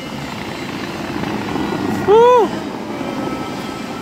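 Steady rushing of the Bellagio fountain's water jets spraying and falling back into the lake, with a brief spoken exclamation about two seconds in.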